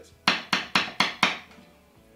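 Tap test on a Strat-style electric guitar's middle single-coil pickup: a metal screwdriver taps the pickup five times, about four taps a second, heard loud through the amplifier. Each tap is sharp and dies away quickly. The loud response shows the selected pickup is switched on and working.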